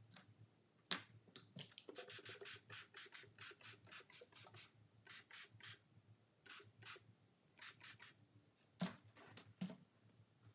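Faint paintbrush strokes scrubbing acrylic paint onto canvas, quick and even at about three to four a second, then in shorter bursts, with two duller knocks near the end.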